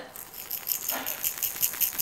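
A novelty Minnie-ears headband being shaken, a rattle built into it giving a fast, even, high-pitched rattling of about six shakes a second.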